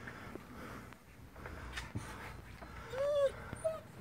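A dog whining inside its kennel: one short whine that rises and falls about three seconds in, then a brief higher one, after a stretch of faint shuffling.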